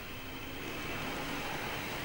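Small N-gauge model train running along its track: a faint, steady rolling hum.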